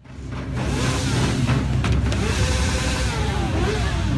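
A car's engine running, with crowd chatter, as a steady loud rumble that fades in over the first second.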